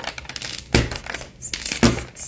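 A man laughing in short bursts about once a second, with quick light clicking and knocking in between.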